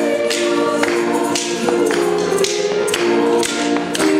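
Young choir singing a lively song, with hands clapping along in a steady beat about twice a second.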